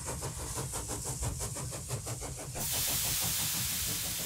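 Steam engine sound effect: a fast, even mechanical beat, then a loud hiss of escaping steam starting about two and a half seconds in.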